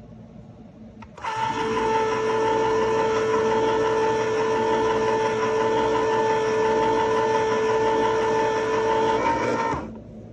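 Hamilton Beach Smooth Touch electric can opener (76606AG) cutting around a can: a click as the lever is pressed down about a second in, then a loud, steady motor whine with a gear hum that runs about eight and a half seconds, changes slightly near the end, and cuts off when the lever is released.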